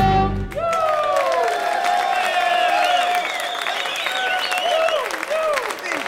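A live blues band with harmonicas ends on its final chord about half a second in, and the audience breaks into applause with cheering and whistles.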